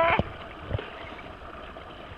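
A voice breaks off right at the start, then steady faint open-air noise over calm river water, with one soft low knock about three-quarters of a second in.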